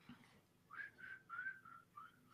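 Near silence with faint whistling: a string of about six short, high, slightly wavering notes starting a little under a second in.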